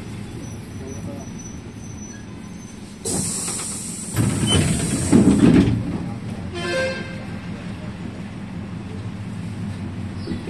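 Steady engine and road noise from inside a moving vehicle on a wet road, with a louder rushing noise starting about three seconds in and lasting about three seconds, and a brief pitched sound just after it.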